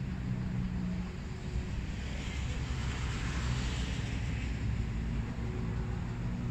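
Steady low rumble of distant road traffic, with a passing vehicle's hiss swelling and fading around the middle.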